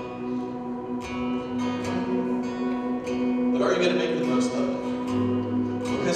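Acoustic guitar played softly, chords left ringing with light picked strokes about once a second.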